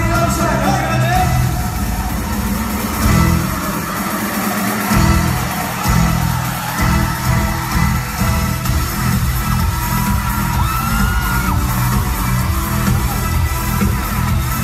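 Loud live dance-pop music over a concert sound system, with a heavy, driving bass beat, recorded from among the audience.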